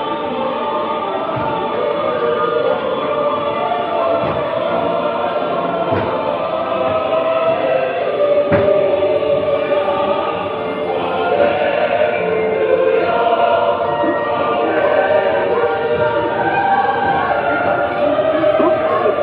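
A choir singing slow, sustained chords as the ride's scene music, with a couple of faint knocks partway through.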